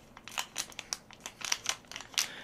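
Small clear plastic zip bag crinkling as fingers work at it to open it: a run of light, irregular crackles.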